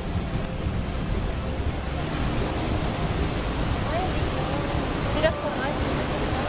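Steady low rumble of a boat under way on a lake, its motor running with wind on the microphone. Faint voices come in about four to five seconds in.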